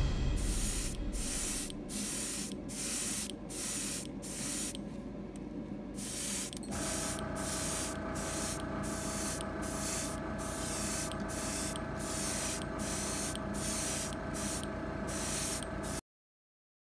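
Gravity-feed airbrush spraying paint in short, repeated bursts of hiss, about one a second, with a quieter stretch in the middle. A steady hum joins about seven seconds in.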